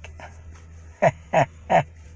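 A man chuckling: three short laughs about a second in, each falling in pitch.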